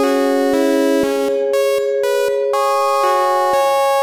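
Electronic music: synthesizer chords with notes changing about twice a second over a steady held tone.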